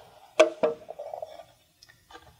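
Two sharp plastic clicks about a quarter second apart as an Open-Mesh OM2P access point is pressed onto the alignment posts of its plastic wall cover and clips into place.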